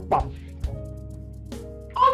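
Background film music of sustained, held chords. The end of a spoken word comes right at the start, and there are a couple of light clicks as a wooden door's handle is worked and the door opened.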